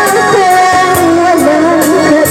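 A woman singing loudly through an amplified microphone over backing music, her voice holding and bending a wavering melody.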